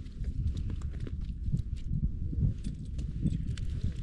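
Wind buffeting the microphone as an uneven low rumble, with scattered light clicks and knocks throughout.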